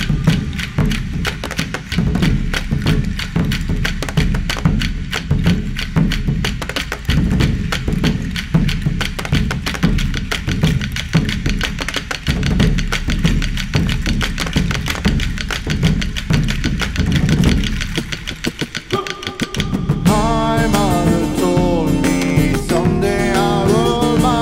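Large skin frame drums struck with beaters in a fast, steady driving rhythm. The drumming stops about three-quarters of the way in, and a plucked long-necked string instrument comes in playing a melody.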